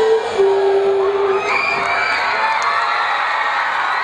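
Crowd cheering and whooping, with one long held shout over the cheering in the first second and a half.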